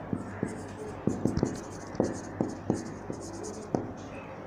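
Marker pen writing on a whiteboard: a scratchy stroke sound broken by irregular light taps as the words are written.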